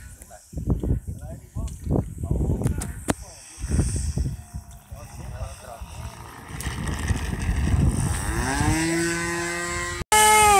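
Wind buffeting the microphone in gusts. About eight and a half seconds in, a model airplane's motor spools up with a rising whine and then holds a steady pitch.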